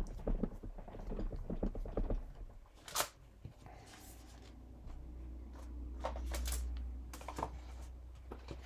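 Hands pressing and rubbing a rubber stamp on an acrylic block down onto a holographic vinyl sheet, with small soft knocks. About three seconds in there is a sharp rasp as the block and sheet are lifted apart. Near the end come short rustles of the vinyl and paper sheets being slid and handled.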